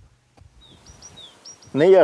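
Small birds chirping outdoors: a series of short, high chirps over about a second, against faint background ambience.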